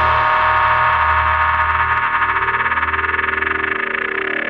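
Dark progressive psytrance in a breakdown without drums: held synthesizer chords over a low bass drone, with synth tones gliding apart in pitch through the second half.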